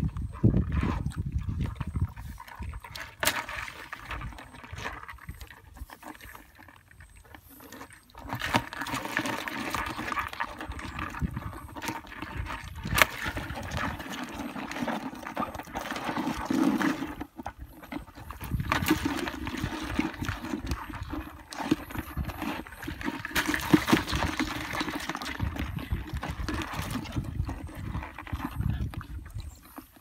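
Hands scooping and sloshing through mud and shallow muddy water in a pit, with irregular splashes and scrapes.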